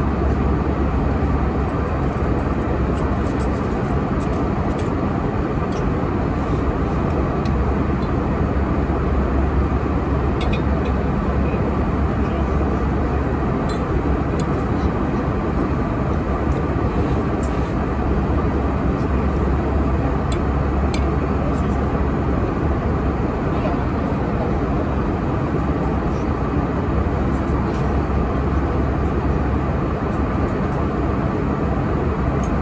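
Steady drone of an airliner cabin in flight, engine and airflow noise, with a few light clicks of a metal knife and fork on a china plate.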